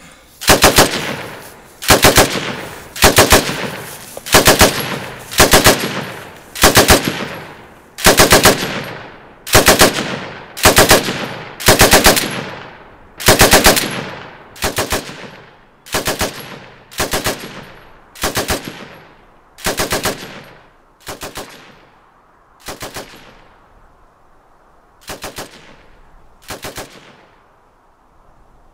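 Machine-gun fire in short bursts, about one a second, each a quick run of several shots that rings on after it. The bursts grow quieter and further apart in the last several seconds and stop shortly before the end.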